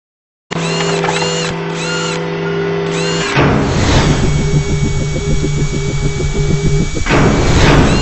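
Logo-intro sound effects: a steady electronic hum with repeated short chirps, a whoosh about three seconds in, then a fast regular mechanical whirring like a power tool, and a second whoosh near the end before the sound cuts off.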